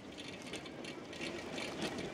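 A bicycle rolling over a dirt road: faint irregular ticking and clicking, like a freewheel ratchet or grit under the tyres, over a low rustle.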